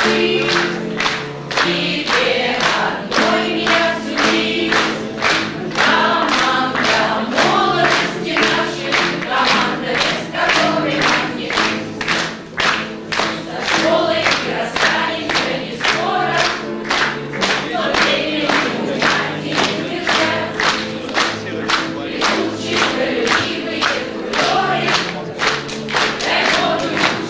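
A group singing the school's song to teachers with musical accompaniment, while the crowd claps in time, about two claps a second.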